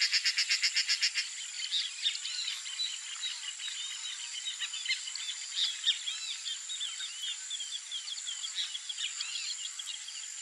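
Wetland wildlife chorus: a rapid rattling call of about ten pulses a second for the first second or so, then many short chirping bird calls over a steady, high insect drone.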